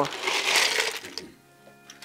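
Ice cubes crunching and rattling as a plastic scoop digs into a cooler of ice, for a little over a second.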